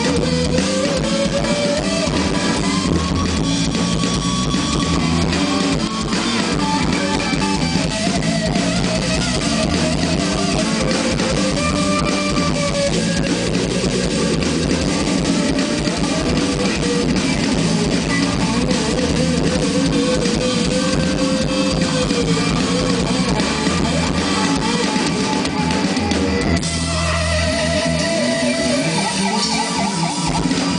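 Live rock band playing an instrumental passage: an electric guitar carries a bending lead melody over drum kit and bass, picked up by a camera microphone in the audience. The backing changes about three-quarters of the way through.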